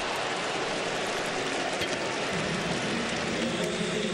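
Ballpark crowd noise: a steady wash of many voices in the stands just after a strikeout, a little fuller from about two seconds in.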